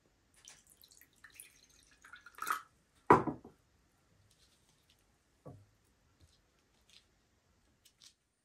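Water poured from a small drinking glass into a glass bowl, a light trickle for about two seconds. It ends with a sharp knock as the glass is set down on a wooden table, the loudest sound, and a softer knock a couple of seconds later.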